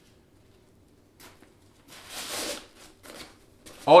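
Nylon fabric of a padded camera-bag insert rustling as its straps are pulled and cinched tight. There is one longer scratchy rustle about two seconds in, with a few shorter ones around it.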